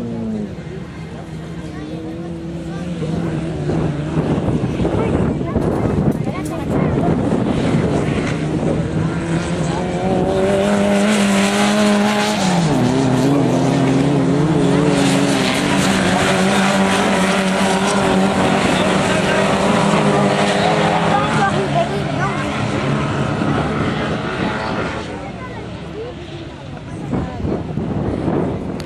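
Several autocross karts racing on a dirt track, their engines revving and changing pitch as they accelerate and shift. The sound is loudest in the middle, when the karts pass close by, and fades near the end as they draw away.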